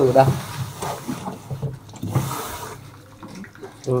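Water trickling and splashing in a twin-tub washing machine's spin-dryer tub while a hand works inside it, with a brief swell of sound about halfway through.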